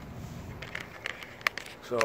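Handling noise as the recording phone is picked up and turned: a few soft clicks and rustles over quiet outdoor background noise, the sharpest about a second and a half in.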